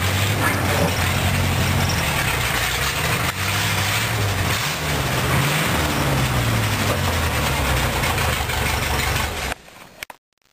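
Rat rod's engine running at low speed, its low note wavering slightly up and down as the car creeps along; it stops abruptly near the end.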